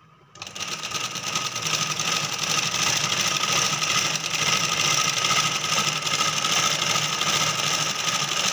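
Domestic sewing machine running, stitching a fall strip onto the edge of a saree. It starts about half a second in, picks up speed over the first second or two, then runs at a steady rate.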